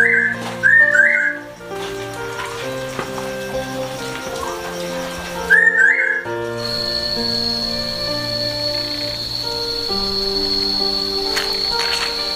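Soft background score of long held notes. A short rising whistle figure rises over it three times: at the start, about a second in, and around six seconds, and these are the loudest sounds. From about halfway a steady high-pitched tone runs on underneath.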